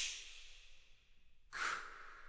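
Male a cappella voices making breathy, unpitched hissing exhalations as a vocal effect: one fades away at the start and another swells about one and a half seconds in.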